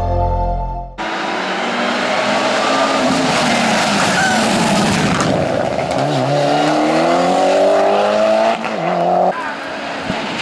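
A Mitsubishi Lancer Evo IX hillclimb car runs at full race pace, its turbocharged four-cylinder engine loud. The engine note sags, then climbs steeply as the car accelerates hard, and breaks off sharply near the end. A second of music is cut off as the engine sound begins.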